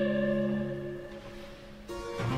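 Baroque string ensemble with lute continuo holding a chord that fades away after a sung phrase ends. A new chord comes in sharply near the end.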